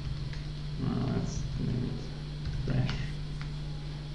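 A man's short wordless murmurs or hums, three in all, with a few light laptop-keyboard clicks as a search word is typed, over a steady low hum.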